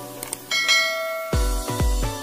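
Subscribe-button animation sound effects: a couple of quick mouse clicks, then a bright bell-like notification chime that rings on. About 1.3 seconds in, electronic music with a heavy bass beat starts.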